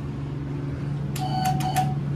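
Three quick electronic beeps from a GAL JetPlus elevator car button, about a second and a quarter in, over a steady low hum.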